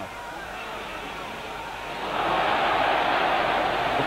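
Crowd noise from a large boxing-arena audience, swelling and getting louder about halfway through as the fighters exchange punches.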